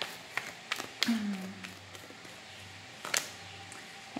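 A deck of oracle cards being shuffled and handled, giving a few soft clicks of card against card, the sharpest about three seconds in. A woman's brief falling hum comes about a second in.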